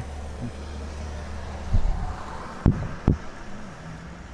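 Car cabin with a low steady hum from the car. Two sharp knocks come about half a second apart, a little past halfway.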